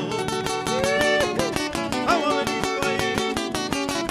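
Several acoustic guitars strummed together in a fast, steady Argentine folk rhythm, an instrumental break with no singing.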